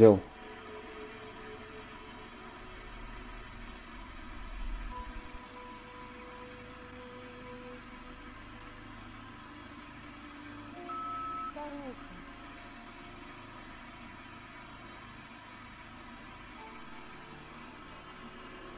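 Faint steady electronic hiss from a spirit box device set up for a question-and-answer session, with faint held tones about five seconds in. About eleven seconds in there is a short electronic word-like burst with a falling pitch, taken as the device's answer.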